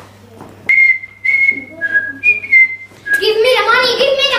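A person whistling a short tune of about six separate held notes, starting about a second in. A child's voice starts near the end.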